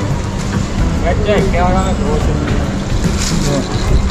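Street ambience: a steady low rumble, with a person's voice heard briefly between about one and two seconds in.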